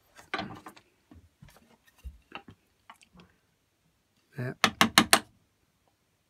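Wood chisel being tapped with a mallet into pine: a quick run of about five small, sharp taps about four and a half seconds in, after a few faint clicks of tool handling.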